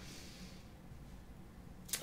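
Faint room tone: a low, steady background noise with no distinct event, in a pause between spoken phrases.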